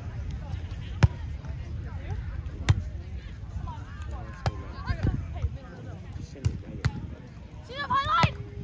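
A beach volleyball being struck by hands and forearms as it is passed, set and hit, about five sharp slaps spaced a second or two apart, over a low rumble of wind on the microphone.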